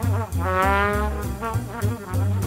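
Small-group swing jazz: a horn plays a melody that holds one long note with vibrato near the start. Under it, a string bass walks in steady steps and a cymbal keeps time.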